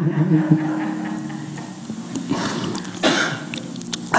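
A man coughing and clearing his throat a few times close to the microphone, in short bursts, over a faint steady low hum.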